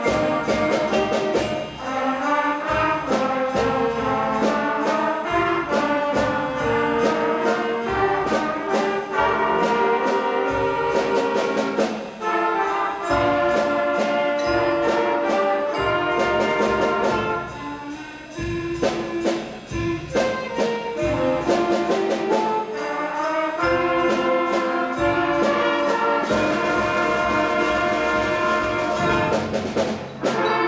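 School concert band playing: brass and saxophones with a xylophone striking notes over them. The music softens briefly about two-thirds of the way through, then returns to full band.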